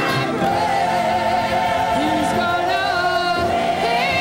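Large gospel choir singing long held notes with vibrato, the chord shifting a couple of times.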